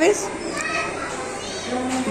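Young children's voices talking quietly, with a woman's voice starting near the end.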